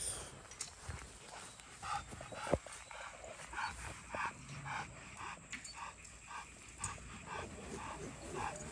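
Rottweiler panting with its tongue out, about two to three breaths a second. There is a single thump about two and a half seconds in.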